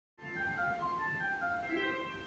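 Station departure melody: a short electronic chime tune of stepping notes played over the platform speakers, signalling that the train's doors are about to close.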